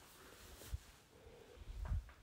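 Charcoal pencil shading on rough paper: a faint scratching, with a soft low thump a little under a second in and another near the end.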